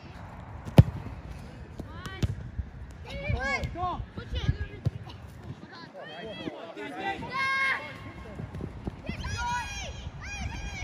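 A football kicked once, a sharp thud about a second in, followed by several loud shouted calls from people on and around the pitch.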